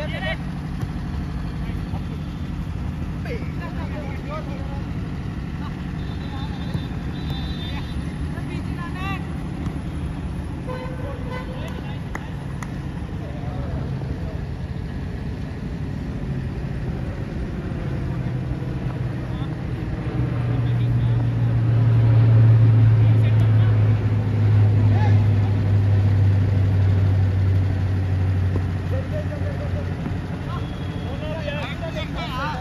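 A steady low engine drone that swells louder for several seconds in the last third before easing off, with players' shouts and ball kicks on the pitch.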